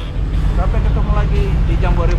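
Jeep Wrangler Rubicon running as it rolls past, a steady low engine rumble, with people's voices over it.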